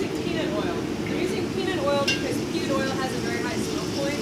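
Eggplant frying in hot oil in a pan: a steady sizzle under a person's voice.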